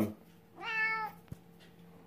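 Domestic cat giving one short meow, about half a second long, rising and then falling in pitch: a demanding meow for attention.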